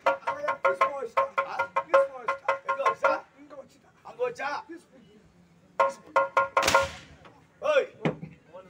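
Stage-drama accompaniment: a two-headed barrel hand drum played in fast, even strokes over a steady held note, stopping about three seconds in. A second short run of drum strokes comes just before six seconds, followed by a short hissing burst and a voice.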